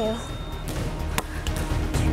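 A volleyball striking a hard surface once about a second in, over background music with a steady low beat.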